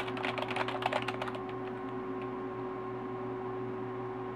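Fast typing on a computer keyboard: a quick run of key clicks for about a second and a half, then it stops, leaving a steady hum underneath.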